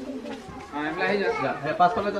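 People talking, with a brief lull in the first half second before the voices pick up again.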